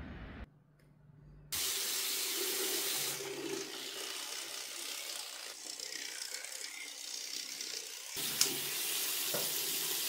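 Bathroom sink tap running, a steady stream of water splashing into the basin, starting about a second and a half in. There is one sharp click near the end.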